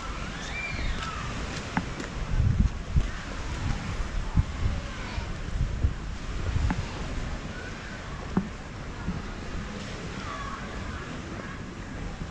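Wind buffeting the microphone in uneven gusts, strongest from about two to five seconds in, over faint distant voices of people on the beach and a few scattered clicks.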